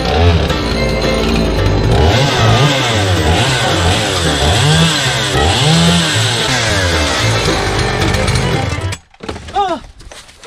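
Chainsaw running and revving up and down as it cuts through a board panel, throwing dust. It cuts off suddenly near the end.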